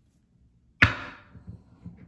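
A sharp snap of a tarot card deck being handled, with a short fading rattle after it, then a few soft taps of the cards.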